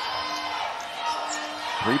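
A basketball being dribbled on a hardwood court, under the steady murmur of an arena crowd.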